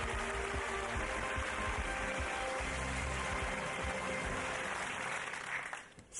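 Studio audience applauding over steady background music from the show's soundtrack; both fade out just before the end.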